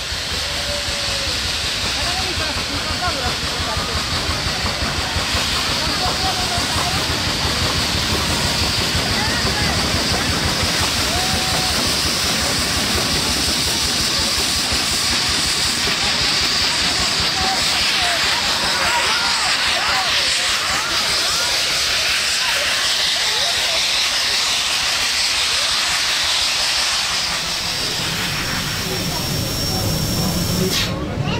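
Rack-railway steam locomotive letting off steam in a loud, steady hiss, with faint voices underneath.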